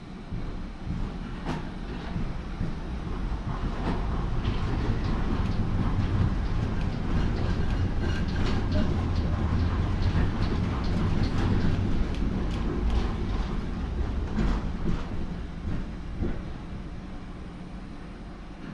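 Düwag GT8S articulated tram heard from inside the passenger saloon while under way: a steady low rumble from the motors and running gear, with occasional clacks from the wheels on the track. It grows louder over the first few seconds, holds through the middle and eases off near the end.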